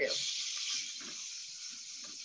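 Raw diced chicken hitting hot oil in a frying pan over a very high flame and sizzling: a sudden hiss that is loudest at first and slowly dies down.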